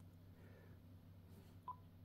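Near silence with a faint low hum, broken near the end by a single short beep from the Icom IC-705 transceiver as its touchscreen is tapped.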